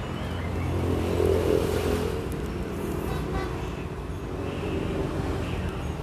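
A motor vehicle engine running nearby, a steady low hum that swells a little about a second in and then holds.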